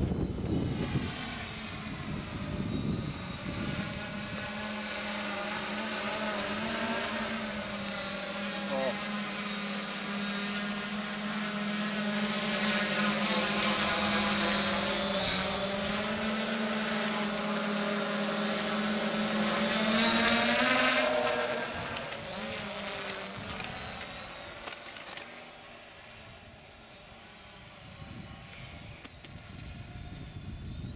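Multirotor octocopter's electric motors and propellers flying overhead: a steady buzzing hum that grows louder as it comes close, peaks about two-thirds of the way in, then fades as it flies off. Wind rumbles on the microphone at the start and near the end.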